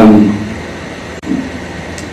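A man's amplified preaching voice trails off, leaving a steady hiss and hum of background noise in the recording, with a brief faint sound about a second in.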